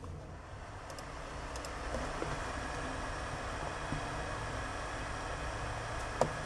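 Steady, faint background hum and hiss: room tone with a low hum, with a few faint clicks.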